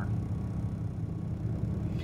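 Steady low background hum, with nothing else over it.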